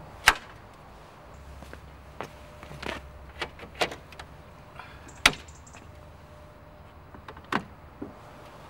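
Car bonnets being released and lifted: a series of sharp metallic clicks and clunks from the bonnet catches and panels, about five in all. The loudest comes about a quarter second in and another strong one about five seconds in. A low steady hum runs underneath from about a second in.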